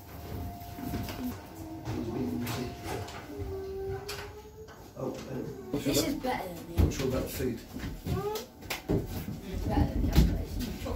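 Indistinct voices of several people talking in a small wooden room, with a few scattered knocks.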